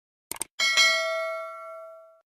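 A quick double click, then a notification-bell ding sound effect: one struck-bell chime with several ringing pitches that fades out slowly.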